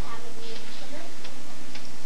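A few faint ticks in the second half, with a brief low murmur of a voice about half a second in, over a steady low hum and hiss.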